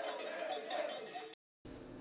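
Street crowd on the march with continuous metallic clanking and ringing. It cuts off suddenly about a second and a half in, leaving faint room tone.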